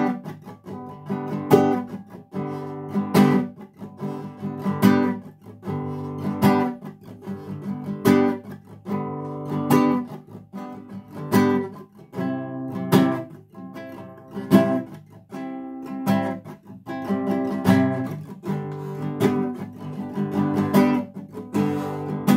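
Nylon-string classical guitar strummed in a steady rhythm through a chord progression of A minor and barre G, C and F major chords. Some strokes are accented harder than others, with a strong accent about every second and a half, and the left hand shapes the sound between strokes.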